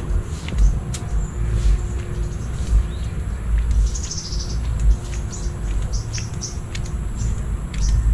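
Small birds chirping in short high calls, with one longer warbling call about four seconds in, over an uneven low rumble from walking.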